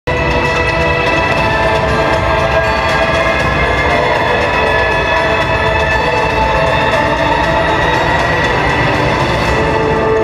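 Countdown soundtrack through the presentation's loudspeakers: a loud, sustained drone of several held tones over a deep rumble.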